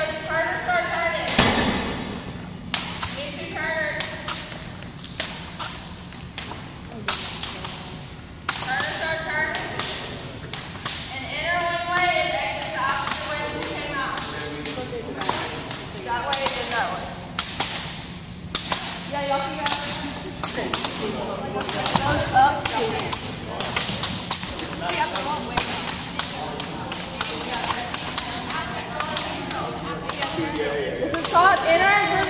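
Irregular sharp slaps and thuds on a hardwood gym floor: long jump ropes hitting the floor and feet landing. Children's voices chatter throughout, and everything echoes in the large gym.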